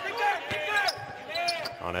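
A basketball being dribbled on a hardwood court, with bounces about every half second. Short sneaker squeaks sound between the bounces.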